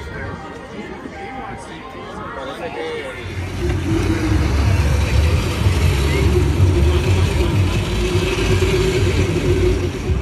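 Crowd chatter for about three seconds. Then small ride-on karts run across asphalt with a loud, steady motor drone and a slightly wavering hum.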